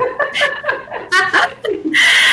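Women laughing: a few short, breathy chuckles.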